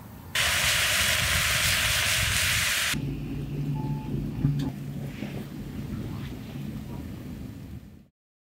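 A loud, even hiss that starts and stops abruptly in the first three seconds, then a wood fire burning in a brick oven with a low rumble and a sharp crackle about halfway through.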